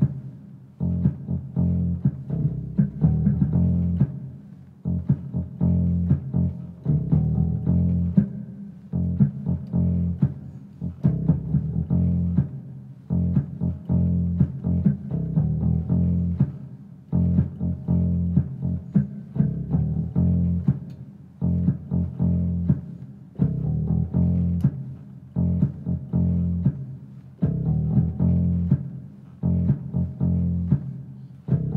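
Funky music played on an 88-key digital stage keyboard: a deep, prominent bass line with electric-guitar and keyboard sounds over it, in short rhythmic phrases.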